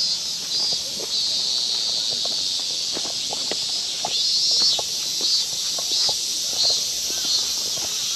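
Cicadas singing in the trees: a steady high buzz that swells in pulses about every two-thirds of a second. Footsteps on a paved path sound underneath.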